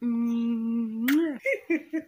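A woman humming with closed lips: one steady held note for about a second, then the pitch swoops up and falls away, followed by a few short hummed sounds. A brief click comes just after the held note.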